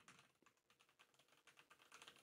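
Near silence with very faint typing on a computer keyboard: a quick, uneven run of key clicks.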